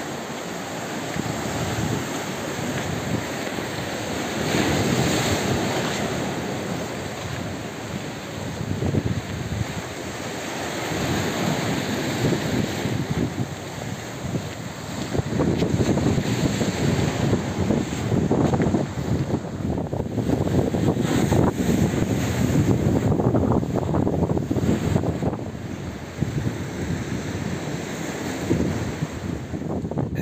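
Mediterranean sea waves breaking and washing over a rocky shore in surges, with wind buffeting the microphone, heavier in the second half.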